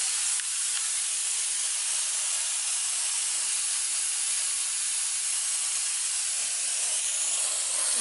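Monster handheld steam cleaner jetting steam from its nozzle in a steady, unbroken hiss.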